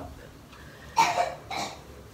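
A brief vocal sound from a woman about a second in, in two short parts, cough-like, with no clear words.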